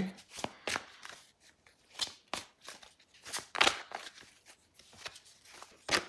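A deck of tarot cards being shuffled and handled: a string of crisp, irregular card snaps and taps, with short pauses between them.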